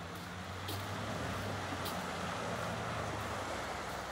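Pickup truck engine running at low speed as the truck drives slowly along a dirt road, a steady low hum.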